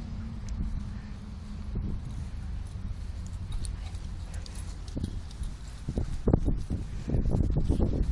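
Low wind rumble on the microphone, joined from about five seconds in by a run of quick, irregular muffled thumps.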